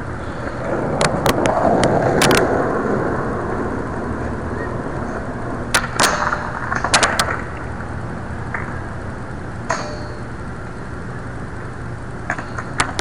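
Skateboard wheels rolling over concrete, building up on the approach. About six seconds in come sharp clacks as the board pops onto a metal flat bar and grinds briefly, then a quick run of clattering knocks as the board comes off onto the ground, with one more clack a few seconds later.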